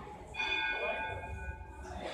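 Hanging temple bell struck once about half a second in, ringing with several high tones that fade out over about a second and a half.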